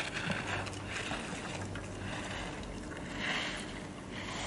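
Slalom skis carving on packed snow: a scraping swish of the edges with each turn, coming about once a second.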